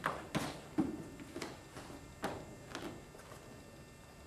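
Hands, knees and shoes knocking and rubbing on a vinyl-covered gym mat as a person shifts from kneeling into a side plank: about seven soft taps and thuds, getting fainter toward the end.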